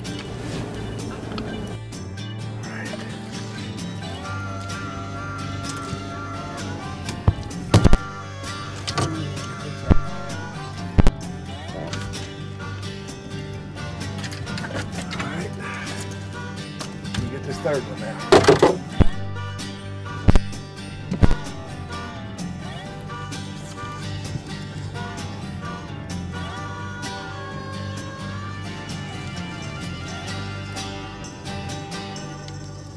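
Background music, with several sharp, loud thumps over it in the middle part: a big blue catfish flopping against the boat's deck.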